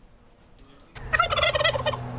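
Male turkey (tom) gobbling: a loud, rapid rattling gobble that starts about a second in, after a quiet first second.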